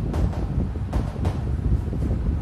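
A steady low rumble on the microphone, with a few short scratchy strokes of chalk on a blackboard as a word and an arrow are written.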